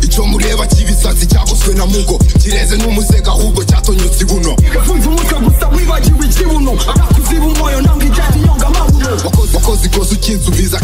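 Hip hop track with a rapped vocal over a beat of deep, sustained bass and repeated kick drums.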